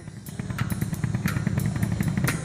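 Street drummer playing a drum kit, a busy beat of frequent sharp hits over a dense low thump, coming in at the start.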